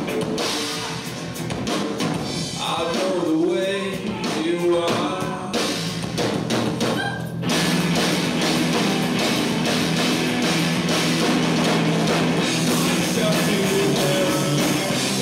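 Live rock band with drum kit, guitar and vocals. For the first seven seconds or so the singing runs over drum hits; then the singing drops out and the band goes into a denser, steady instrumental section.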